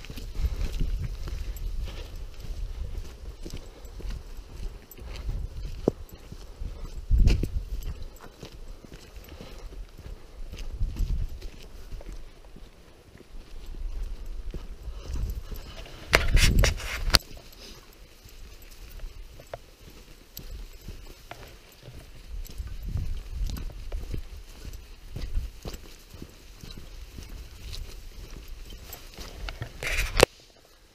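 Footsteps of a hiker walking on a narrow stony hill path, with a low, uneven rumble on the microphone throughout. A louder burst of noise comes about halfway through.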